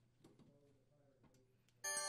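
Near silence with a few faint ticks, then near the end a sustained chime of several ringing tones starts: the sound effect that marks an on-screen warning icon.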